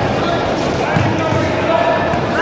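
Dull thuds of a kickboxing bout in the ring, blows landing on protective gear and feet on the canvas, under the voices of people around the ring, echoing in a large sports hall.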